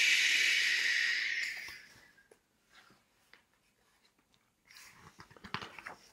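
A man's long, drawn-out breathy "shhh" in imitation of the evening wind, fading out about two seconds in. Near the end, a few soft rustles and clicks as a picture book's page is turned.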